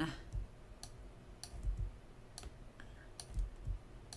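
Computer mouse clicking a handful of times, sharp single clicks spaced roughly half a second to a second apart, as notes are edited by hand.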